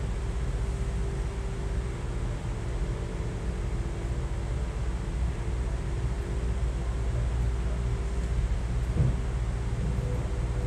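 Steady low mechanical hum and rumble with a constant humming tone, the kind of drone a room's running machinery makes; a short low thump about nine seconds in.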